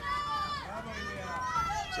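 Distant voices shouting in long, drawn-out, high-pitched calls over a faint steady hiss, the sound of other players shouting from across the course.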